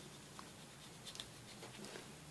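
Faint soft rustling and a couple of small ticks from a thin latex prosthetic being handled and dusted with a powder brush, over quiet room tone.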